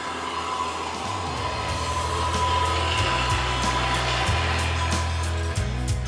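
Treadle-powered circular cutoff saw, its blade spinning with a steady whir as it cuts through a wooden board, over background music.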